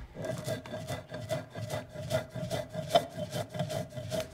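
Stone mano rubbed back and forth over a metate, grinding: a steady run of rasping strokes, about three a second.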